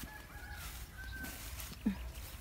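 Faint, short chirping calls of birds, likely fowl, then one short, louder low call that falls in pitch near the end, over a steady low rumble of wind on the microphone.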